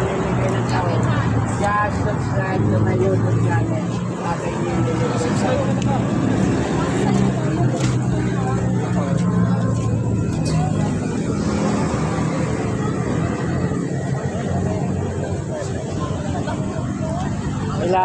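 Street traffic noise: a vehicle engine hums steadily at low pitch, weakening about ten seconds in, under people's chatter.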